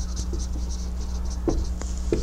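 Marker writing on a whiteboard: a rapid run of short, high, scratchy strokes with a few faint ticks as the pen moves.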